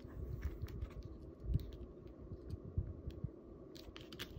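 Paper pieces being handled and pressed onto a card on a tabletop: light scattered clicks and paper ticks with a few soft low thumps, the firmest about one and a half seconds in.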